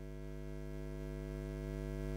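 Steady electrical mains hum, low and buzzy with a row of overtones, growing slightly louder over the two seconds.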